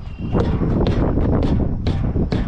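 A hammer thumping a semi truck's front steer tire, several short knocks about half a second apart, over a low rumble of wind on the microphone. It is a thump check of the tire's inflation.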